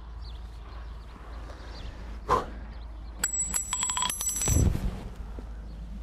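A rapid metallic ringing, struck over and over for about a second and a half from a little past the middle, ending in a dull thump, over a low steady hum.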